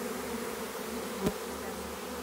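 Honeybees of a newly hived swarm buzzing steadily around the hive entrance, where workers are guiding the rest of the swarm in. A single brief knock about a second in.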